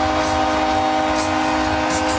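Arena goal horn sounding one long, steady blast of several tones at once over a cheering crowd, signalling a home-team goal.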